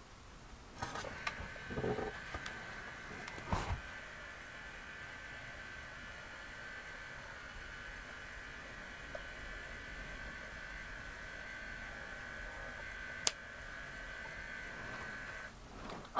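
King Jim Tepra Lite LR30 mini thermal label printer running as it prints and feeds out a label: a faint, steady whirring hum that starts about a second in and stops just before the end. There are a few small clicks near the start and one sharp click near the end.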